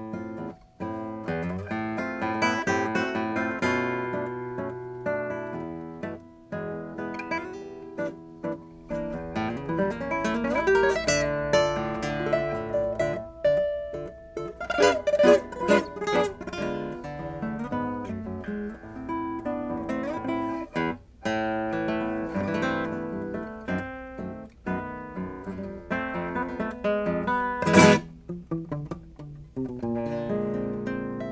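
A 2013 Kazuo Sato classical guitar with a spruce top and Brazilian rosewood back, played solo fingerstyle: a continuous flow of plucked notes and chords. About two seconds before the end comes one sudden, loud accent, the loudest moment.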